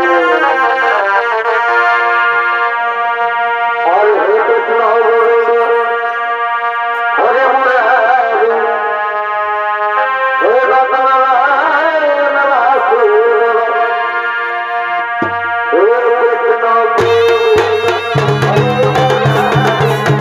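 Purulia Chhau dance music: a wind instrument plays a wavering, bending melody over steady held tones. Near the end, drums come in suddenly with a fast, dense beat.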